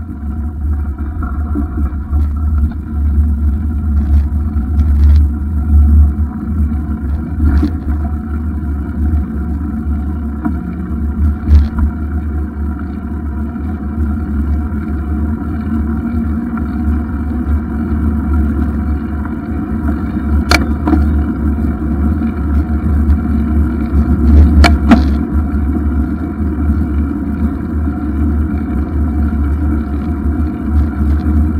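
Riding noise picked up by a camera mounted on a moving bicycle: a steady low rumble of tyres on tarmac and air rushing past. A few sharp knocks come from bumps in the path, the loudest about 20 and 25 seconds in.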